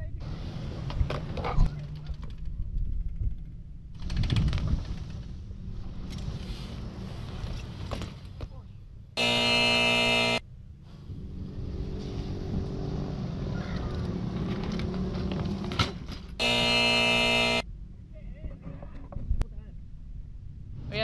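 BMX bike ride on a concrete skatepark: a low rumble of tyres rolling and wind on the camera microphone. Twice, about halfway through and again near the end, a loud electronic buzzer sounds for about a second, marking a missed trick and a letter given in the game of BIKE.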